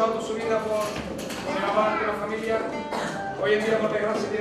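A man speaking in Spanish, with a Spanish guitar playing quietly underneath.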